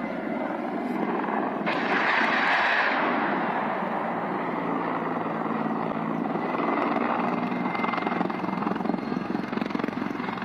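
A military helicopter flying low, with a steady rotor and engine rumble and a thin high whine. About two seconds in, a louder rushing burst lasts about a second.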